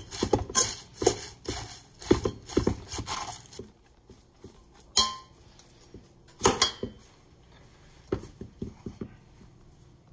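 Metal tongs tossing shredded cabbage and avocado in a stainless steel bowl: a busy run of clicking, rustling strokes for about three and a half seconds, then a few separate sharp clinks of metal on the bowl, one of them ringing briefly.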